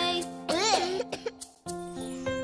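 Children's song backing music with a cartoon child's voice: a short rising-and-falling vocal sound about half a second in, then a couple of short coughs from the sick baby. The music briefly drops out and comes back near the end.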